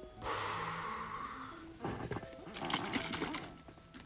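A person blowing out a long breath for about a second and a half, then a second, rougher burst of breath-like noise: a smoker exhaling.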